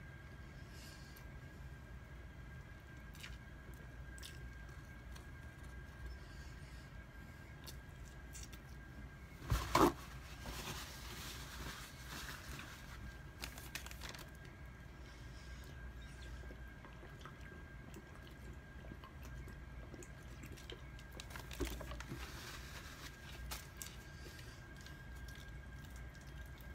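Faint close-up chewing and mouth sounds of a man eating rotisserie chicken, over a low steady room hum. About ten seconds in there is a brief louder sound, followed by a few seconds of rustling.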